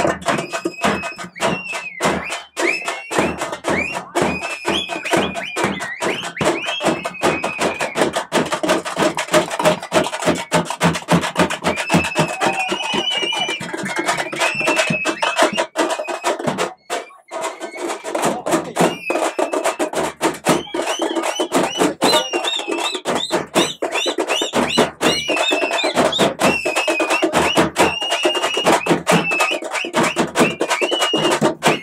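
Street procession band: large double-headed drums beaten in a fast, dense rhythm, with a high wind instrument playing a wavering melody over them. The music dips out briefly a little past halfway, then picks up again.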